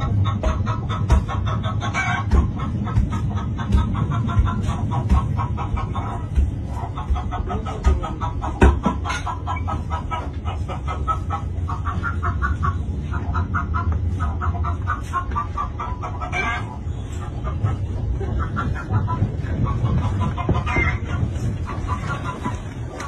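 Long wooden pestle thudding into a wooden mortar about once a second, pounding fufu, over the steady low rumble of a moving train carriage. Short, rapidly repeated clucking calls, like chickens, run over it throughout.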